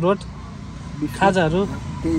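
Steady low rumble of road traffic, a motor vehicle running close by, with short bursts of a person's voice at the start and about a second in.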